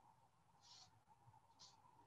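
Near silence: room tone, with two brief faint soft hisses.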